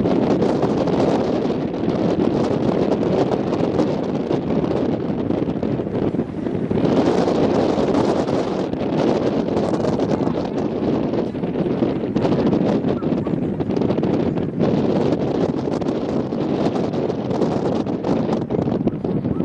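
Wind buffeting the microphone: a loud rushing noise that swells and eases in gusts, strongest around seven seconds in.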